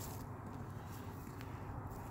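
Quiet outdoor background: a steady low rumble with no distinct events, apart from one faint tick about halfway through.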